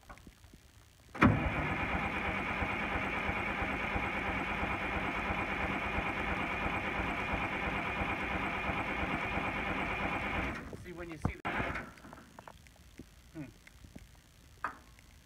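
Timberjack 225 skidder's diesel engine turning over on its starter for about nine seconds, starting suddenly just over a second in and then stopping, with a few small clicks afterwards.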